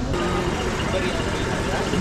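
Steady low rumble of idling vehicle engines under people's voices; near the end a voice rises in pitch.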